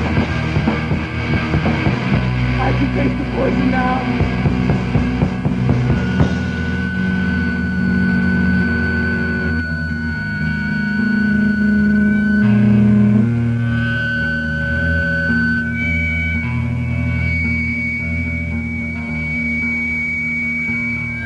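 Rock music from a band's self-released demo recording: a busy, densely played passage for about six seconds, then long held guitar notes ring out over a steady low chord.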